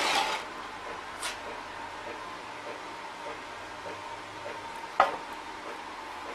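Handling noise over a steady hiss with a faint whine, with a light click about a second in and a single sharp knock about five seconds in, as a heavy welded steel part is handled on a workbench.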